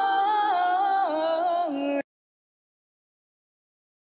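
A woman's voice singing a long, ornamented note that steps down in pitch in a flamenco-style run, live. It cuts off suddenly about halfway through, leaving dead silence.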